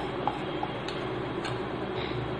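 Hand-held squeeze-handle flour sifter clicking softly and irregularly, about five ticks in two seconds, as flour is worked through its mesh, over a steady background hiss.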